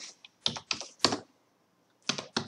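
Computer keyboard keys pressed one at a time: about five or six separate keystrokes with short, uneven gaps, stopping a little over a second in.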